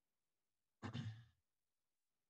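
A single short sigh from a person's voice, about half a second long, roughly a second in. The rest is silence.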